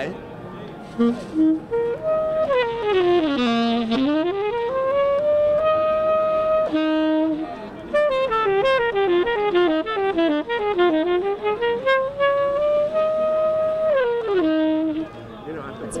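RS Berkeley Virtuoso tenor saxophone played solo in a jazz style. It plays fast runs that sweep down low and climb back up to long held high notes, twice, with a short break in between. The player calls the high notes very clean and clear in intonation.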